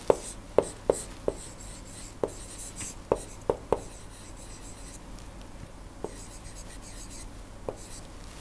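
Stylus handwriting on a pen tablet: a quick run of sharp little taps over the first four seconds, then two more spaced out, with faint scratching of the pen tip between them.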